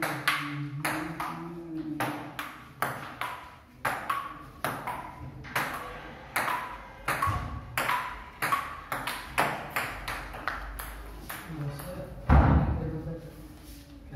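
Table tennis rally: the plastic ball clicking off the paddles and the table, about two to three hits a second with a short ringing after each, and a louder knock near the end.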